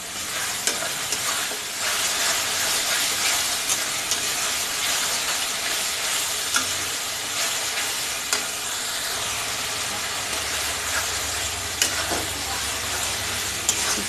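Onion-and-spice masala with freshly added ground tomato paste sizzling in hot oil in a kadhai, stirred with a spatula that scrapes the pan and taps it a few times.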